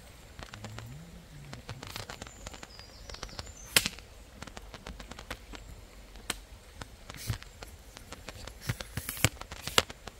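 Footsteps on a forest floor of dry twigs and leaf litter, with a run of sharp snaps and crackles, the loudest about four seconds in and a cluster near the end.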